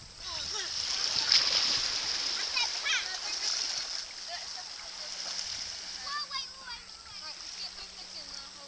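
Shallow seawater splashing and sloshing around children wading and pushing a bodyboard through it, busiest in the first few seconds. Children's high voices call out briefly, once around the middle and again later.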